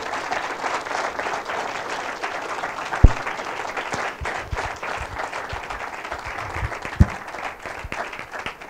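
Audience applauding steadily after a talk ends, with two dull thumps, one about three seconds in and one near the end.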